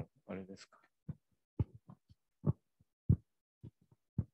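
The tail of a spoken word, then handling noise from a handheld microphone: six or seven short, low thumps and clicks, irregularly spaced about half a second to a second apart.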